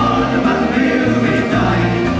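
Irish folk band playing live, with a man singing into a microphone over guitar and a bass line that moves about every half second.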